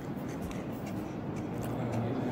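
Soft rubbing and a few faint small clicks as a piece of fried milkfish is handled and pulled apart with the fingers, over a steady room hum.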